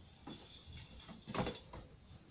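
Light knocks and clicks of plastic toys being handled as a doll is set into a plastic feeding seat, with one louder knock about one and a half seconds in.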